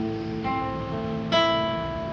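Acoustic guitar being fingerpicked, with notes left to ring. Fresh plucks come about half a second in and again near one and a half seconds.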